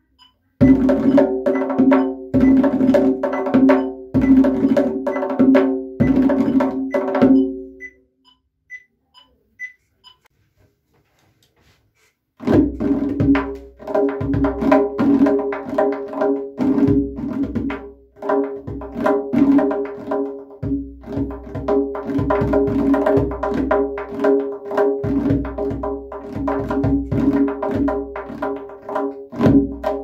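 Solo tombak (Persian goblet drum) played by hand: quick strokes and rolls with a ringing low drum tone. The playing stops for about four seconds a quarter of the way through, then starts again and runs on.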